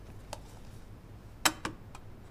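A few light clicks and taps of makeup containers being picked up and set down on a vanity table, the loudest a quick pair about one and a half seconds in.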